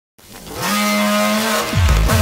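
Opening of a sped-up (nightcore) hardstyle track: a noisy whoosh that swells up quickly with a held synth tone under it, then hard kick drums start pounding about three times a second near the end.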